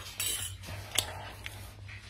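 A sip from a glass of milk near the start, then a metal spoon clinking once against the drinking glass about a second in.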